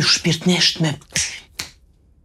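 A voice saying a short phrase, then two sharp finger snaps a little after a second in, about half a second apart.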